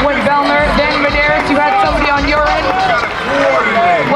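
A voice over a stadium public address with crowd noise beneath, loud and continuous but not clear enough for words to be made out.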